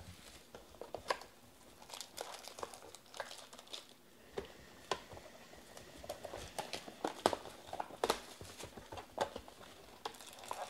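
Clear plastic shrink wrap being torn off a sealed trading-card box and crumpled in the hands: irregular crinkles and sharp snaps, loudest about seven and eight seconds in. The cardboard box is handled as it is opened.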